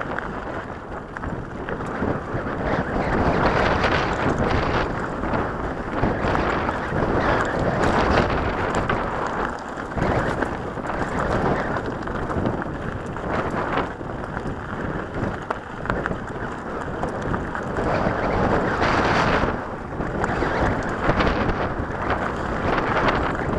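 Wind buffeting the microphone of a camera on a mountain bike riding a rocky dirt singletrack, mixed with tyre crunch on gravel and frequent small jolts and rattles from the bike.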